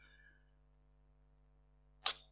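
Near silence in a pause between speakers, with only a very faint steady hum.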